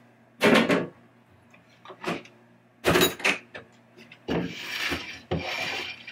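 Pinball machine being opened: its metal lockdown bar is set down with sharp knocks about half a second and three seconds in, then the playfield glass slides out of its channel with a long rubbing scrape for the last two seconds.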